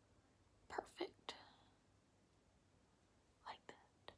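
Near silence, with a few faint, short whispered mouth sounds from a woman: three about a second in and two more near the end.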